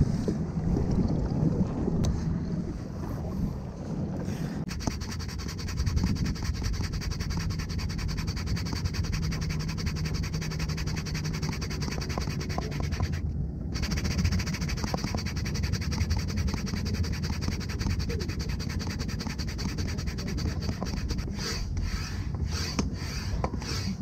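Wind buffeting the camera microphone: a steady low rumble with no clear pitch, cut off briefly about thirteen seconds in.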